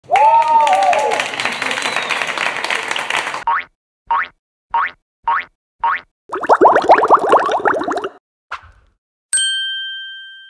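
A string of edited cartoon-style sound effects. It opens with a noisy whoosh and a wavering tone, then come five short rising boings about half a second apart and a fast run of rising boings. Near the end a bright bell-like ding sounds and rings on.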